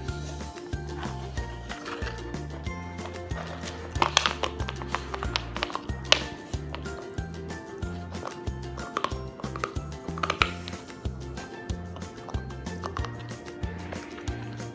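Background music with a steady beat, over a few sharp clacks about four, six, nine and ten seconds in: an ice cube knocking on a hard floor and crunching in a golden retriever puppy's teeth as it chews.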